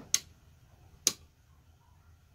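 Two short, sharp clicks about a second apart from the plastic jumper-wire connector being handled on the water level sensor board's header pins as it is powered up.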